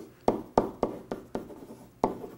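Marker writing on a whiteboard: a quick run of short, sharp strokes, about three or four a second, as letters are written.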